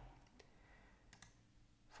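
Near silence with a few faint, sharp clicks.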